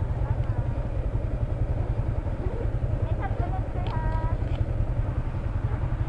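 Motorcycle engine idling with a steady low rumble while stopped, with faint voices in the background.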